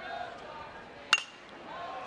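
A single sharp ping about a second in, with a brief metallic ring: a metal college baseball bat making contact with a pitched fastball on a late swing that pops it up.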